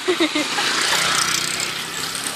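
A motor vehicle passing, its engine and road noise swelling about a second in and then slowly fading, after a couple of spoken words at the start.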